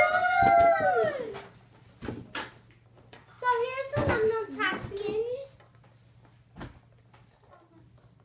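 A child's excited, drawn-out vocal exclamation in the first second, then a few short knocks as the cardboard box and plastic toy packaging are handled, and more of a child's voice around four to five seconds in.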